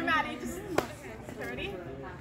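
Girls' voices talking indistinctly, with one sharp click a little under a second in.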